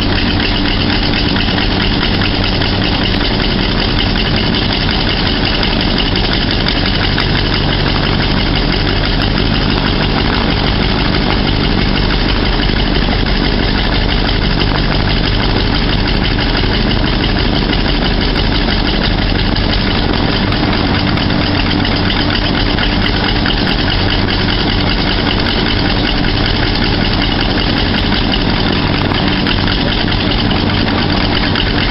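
One radial engine of a Beech 18 idling steadily on the ground, its loudness nearly constant throughout, while the other engine stays stopped.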